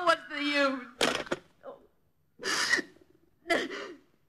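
A distraught woman's voice cries out, then breaks into three sharp gasping breaths about a second apart.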